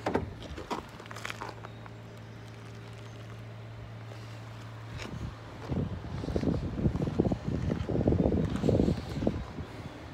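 Footsteps crunching on gravel through the second half, louder than anything else, over a steady low hum that stops about halfway; a few light clicks near the start.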